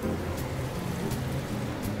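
Diced red peppers, apples and celery sizzling steadily in oil in a steel sauté pan on a gas range, with soft background music underneath.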